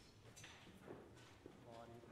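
Faint murmured voices with a few soft heel clicks: footsteps on a hard church floor as people walk up to receive communion.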